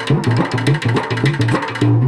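Large double-headed drums beaten with sticks in a fast, steady rhythm, playing oppari lament music, with a low melody moving in steps underneath.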